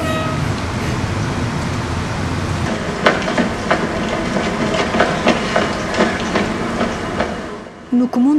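Quick footsteps on a city pavement, about three steps a second, starting about three seconds in over a steady low street rumble, fading near the end.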